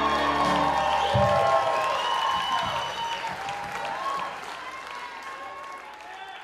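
A rock band's final chord ringing and cutting off about a second in, then audience applause and cheering with high whoops, fading out toward the end.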